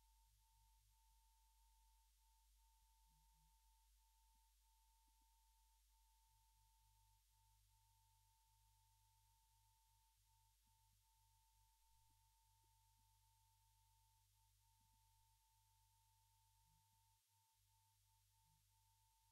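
Near silence: a faint steady high tone that breaks off briefly every second or so, over a faint low hum.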